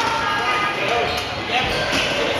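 Rubber dodgeballs bouncing on a hardwood gym floor, with a louder thud about one and a half seconds in, under players' overlapping shouts and chatter echoing in the gym.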